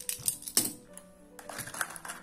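Metal costume jewelry clicking and clinking in a series of sharp, irregular clicks as pieces are handled in a plastic compartment box and set down on the table, over soft background music.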